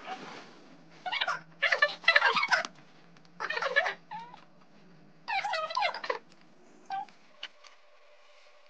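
Several short bursts of a woman's high-pitched, wordless voice with gliding pitch, playful squeals or giggles rather than words. They come after a brief rustle of scissors cutting photo paper right at the start.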